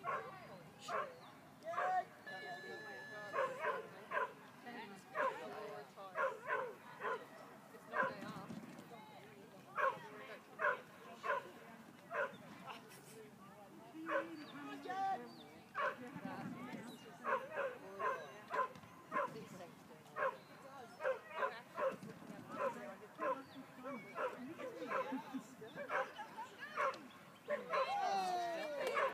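A dog barking repeatedly in short, sharp barks, roughly one or two a second, with a few brief pauses.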